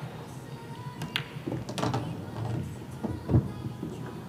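Background music with pool ball clicks: the cue tip striking the cue ball and the cue ball hitting an object ball about a second in, more clicks near two seconds, then a low thud a little after three seconds as a ball drops into a pocket.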